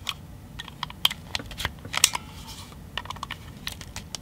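Irregular small clicks and scrapes of a metal blade worked along the seam of a screwless plastic power bank case, prying the shell apart; the case is tough to open.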